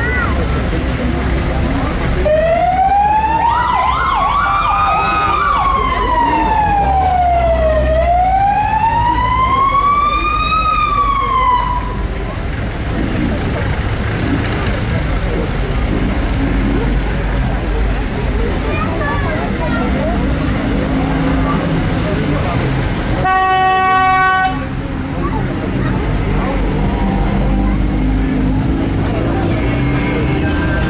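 Emergency-vehicle siren wailing in two slow rising-and-falling sweeps over about ten seconds, then a single horn blast of about a second. Both come over idling and passing car engines and crowd noise.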